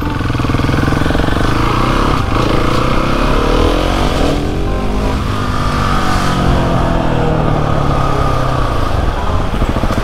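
Motorcycle engine running loud as the bike accelerates, its pitch rising and falling several times.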